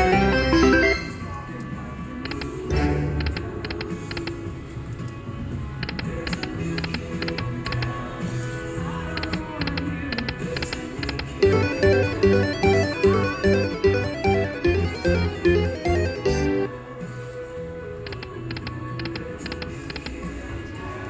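Buffalo Gold Revolution slot machine playing its game sounds and music over repeated spins, with runs of short clicks as the reels spin and stop. A loud burst of sound plays in the first second, and a rhythmic pulsing tune of about two beats a second plays from about 11 to 16 seconds in.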